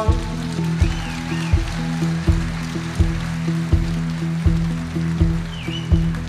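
A live band plays an instrumental stretch between sung lines: a steady beat of low thumps, about four every three seconds, over held low notes.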